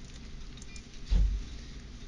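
A single low thump about a second in, over a steady low hum.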